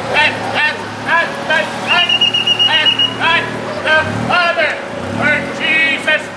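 A man preaching in a loud voice over a tuk-tuk's engine, which runs low and revs up twice as it comes closer. A steady high tone sounds for about a second, about two seconds in.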